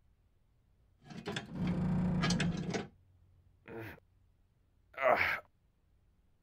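A man sliding down a narrow chute: a noisy sliding sound of about two seconds, then two short grunts from his voice as he comes down and lands.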